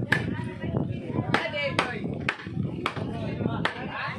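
A meat cleaver chopping through a whole roast pig (lechon) on a banana-leaf-covered table: about seven sharp chops at an uneven pace.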